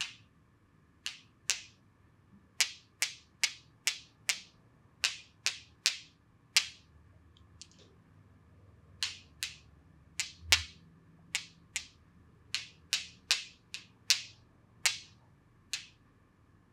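Sharp snapping clicks from the massage therapist's fingers working at the client's face, one or two a second at uneven spacing.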